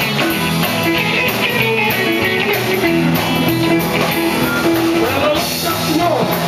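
Live rockabilly band playing a passage led by electric guitar over a drum kit.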